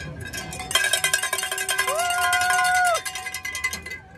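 A handheld cowbell-style bell shaken rapidly and hard for about three seconds, clanging continuously with its ringing tones held underneath. A voice holds one long loud shout over it in the middle.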